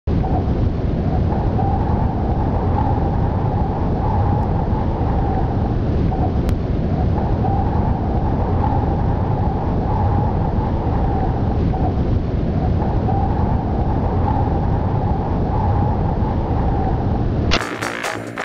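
Loud, steady rumbling noise with a droning mid-pitched tone that drops out briefly every five or six seconds. Music with a beat starts abruptly just before the end.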